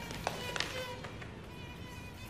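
A mosquito whining, with a high, wavering buzz, and two sharp smacks about a quarter and half a second in.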